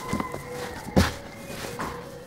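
Hands kneading and pressing a stiff cookie dough on a floured wooden table, with a dull thump about a second in as the dough is pushed down.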